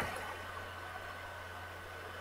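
Quiet room tone: a steady low electrical hum and faint hiss, with a thin steady high whine above them.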